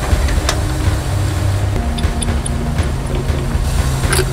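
Airport baggage conveyor machinery running with a steady low rumble and a few short clicks. The conveyor is still under power, its motor not switched off or locked out.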